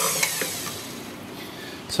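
KitchenAid Heavy Duty stand mixer running with its flat beater turning through creamed butter and sugar in a steel bowl, a steady motor whine that dies away over about the first second as the mixer is switched off.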